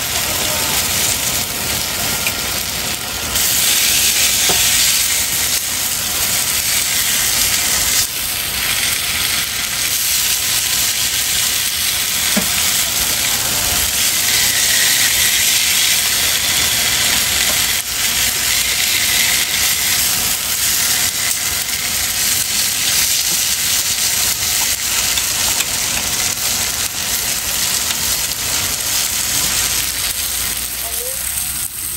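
Skewered squid and sausage sizzling steadily on a hot flat-top griddle, a dense, loud hiss, with a few light clicks as the skewers are handled.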